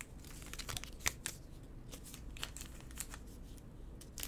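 Faint handling noise of trading cards: a few scattered soft clicks and rustles as a card is moved and set down.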